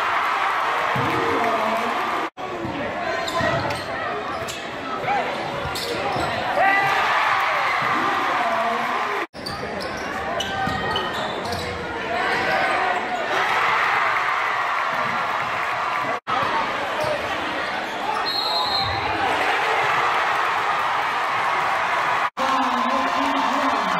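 Game sound in a crowded gymnasium: a basketball bouncing on the hardwood under the continuous noise and voices of a large crowd. The sound cuts off abruptly three times where clips are joined.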